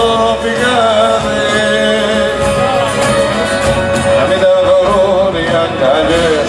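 Live music: a man singing a Greek song to acoustic guitar with band accompaniment.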